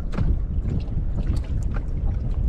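Wind buffeting the microphone in a steady low rumble aboard a small outrigger canoe at sea, with scattered light clicks and knocks.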